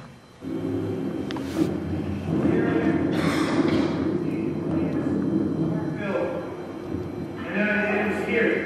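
People's voices making long, wavering, bleat-like sounds without clear words.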